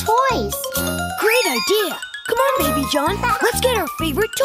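Cartoon children's voices speaking over upbeat children's background music with a bass note pulsing about twice a second.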